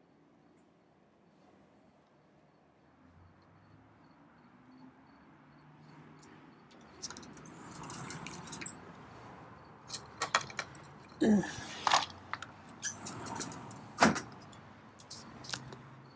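Handling and movement noises: a few quiet seconds, then rustling with several sharp clicks and knocks in the second half and a short rising squeak, as a golf ball is taken out of a cat's DIY slow-feeder bowl of golf balls.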